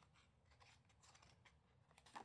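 Near silence, with faint soft ticks and rustles of a hand handling a picture book's paper page as it begins to turn it.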